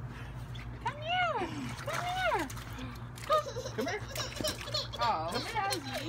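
Toddlers' wordless squeals and whiny cries, high and sliding up then down in pitch: two long ones about a second and two seconds in, then a run of shorter ones.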